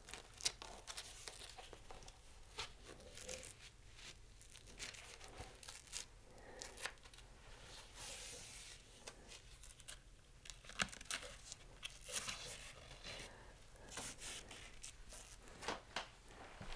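Faint handling of a knee support being pulled over the foot and fitted onto the leg: fabric and strap rustling with scattered small clicks and several short noisy rasps.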